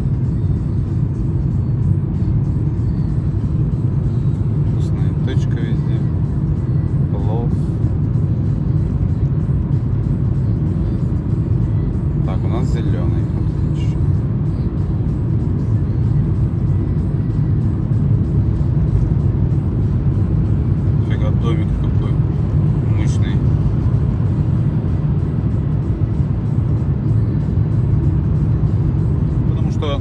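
Steady low rumble of a car's engine and tyres, heard from inside the cabin while driving at a steady pace on a city street.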